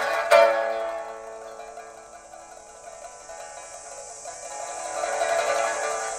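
Pipa playing: a sharp, loud struck note about a third of a second in rings and dies away. The playing stays quieter through the middle and swells again near the end, with a steady high hiss-like layer underneath.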